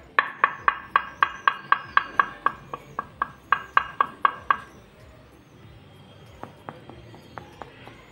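Knuckles rapping on a stone-effect wall tile: a quick, even run of about four knocks a second, each with a short ringing tone, lasting about four and a half seconds, then a few fainter, scattered taps near the end.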